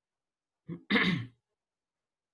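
A man clearing his throat once, in two short parts about a second in.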